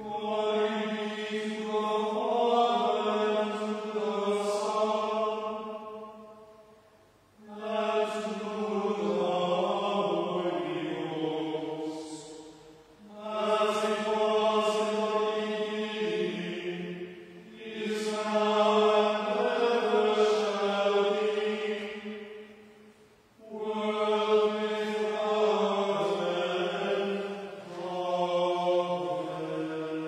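A small group of voices chanting plainsong, in phrases of about five seconds separated by short pauses for breath.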